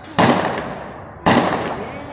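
Two gunshots firing non-lethal rounds about a second apart, each echoing and dying away over most of a second.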